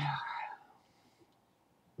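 A woman's breathy, whispered exhale trailing off in the first half second, then near silence.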